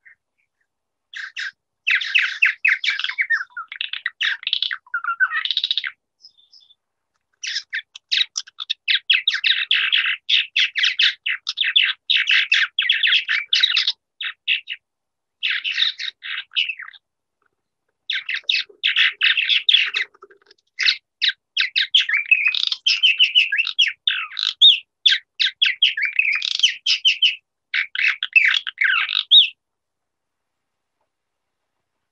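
Western purple martins singing: a rapid, chattering run of chirps and gurgling notes, broken by a few short pauses.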